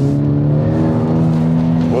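Volkswagen Golf GTI's turbocharged four-cylinder engine pulling under load, heard inside the cabin: a steady drone whose pitch rises gently as the car accelerates.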